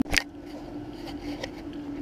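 A brief sharp click just after the start, then a faint steady hum under low background noise.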